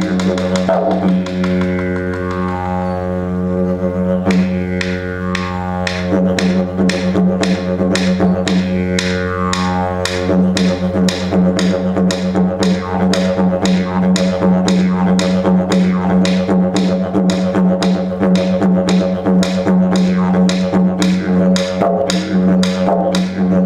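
Didgeridoo played with a steady low drone. In the first half its overtones sweep up and down. From about ten seconds in, a fast, even rhythm of pulses rides over the drone.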